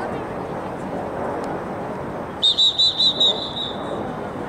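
Referee's whistle blown about two and a half seconds in: a quick run of about five short high blasts running into a longer held note, over steady outdoor background noise.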